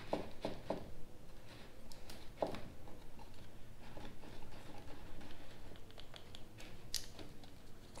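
Quiet handling of a kayak's plastic rudder-steering mount and its wire cable as the cable is fed through by hand: a few light clicks in the first second, a sharper tap about two and a half seconds in, and another near the end.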